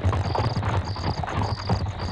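Night-time ambience of crickets chirping in a regular rhythm, about two chirps a second, with frogs croaking. Low, irregular thudding runs underneath.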